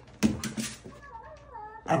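Dogs playing: a short sharp bark about a quarter-second in, then a high, wavering whine about a second in.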